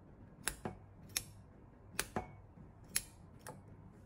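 Manual tufting gun clicking as its handle is squeezed and released, its needle punching yarn into the backing cloth: about six sharp clicks, roughly one a second, twice as a quick double click.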